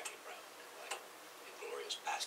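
Faint speech from a television interview played through the set's speaker, with a couple of sharp ticks, about a second apart.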